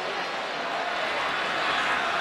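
Stadium crowd noise: a steady din of many voices from a large football crowd.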